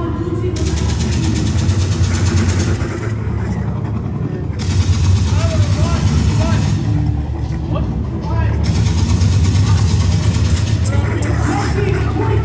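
Motorized foam-dart blasters firing in three bursts of about two seconds each, each burst starting and stopping abruptly over a steady low motor hum.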